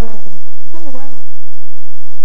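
A voice calling out in two short phrases with a wavering, rising-and-falling pitch: one dies away just after the start, the next runs from under a second in to past one second. After that only a steady hiss-like background remains.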